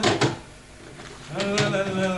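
Objects clicking and knocking as they are handled in a wooden drawer, with two sharp clicks just after the start. A man's voice holds drawn-out, wavering notes in the second half.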